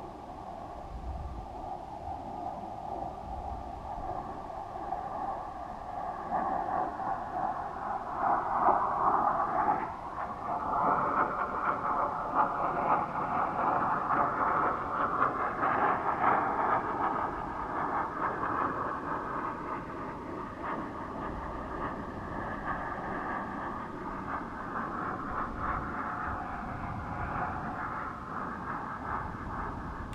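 Wind rushing over a weather balloon payload's onboard camera, with faint wavering whistle-like tones. It swells louder from about eight seconds in and eases somewhat after the middle.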